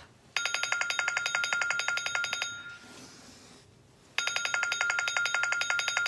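Electronic wake-up alarm ringing: two bursts of rapid, evenly repeated beeps, each about two seconds long, with a pause of under two seconds between them.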